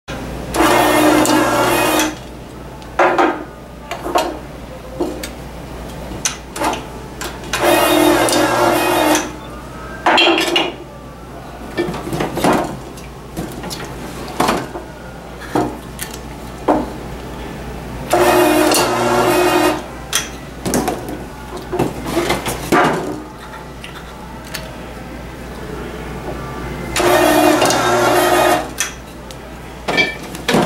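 Tabletop electric screw capper's motor-driven chuck running in four bursts of about a second and a half each, roughly nine seconds apart, each time spinning a cap onto a glass oil bottle. Between the cycles come short clicks and knocks of bottles and caps being handled, over a steady low hum.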